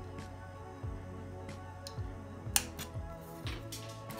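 Background music, with a few sharp snips from aviation snips cutting the corners out of a small piece of sheet steel. The loudest snip comes about two and a half seconds in.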